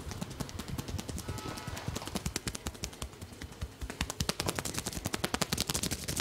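Percussive head massage: a barber's open hands striking rapidly on the scalp and neck, a fast train of slaps that grows louder about four seconds in.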